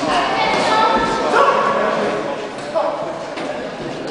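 Spectators and corner people shouting encouragement and instructions to boxers during a bout, several loud voices calling out over one another, with another shout near the end.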